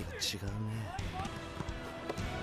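Anime soundtrack: a man's voice speaking a short Japanese line at the start, over background music, with a volleyball bouncing on a wooden gym floor.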